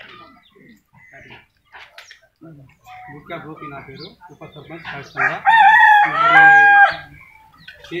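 A rooster crowing once, loudly, about five seconds in. The crow lasts about two seconds and ends on a held, falling note, over faint background voices.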